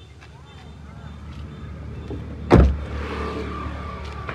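A single loud thump about two and a half seconds in, over a low steady rumble.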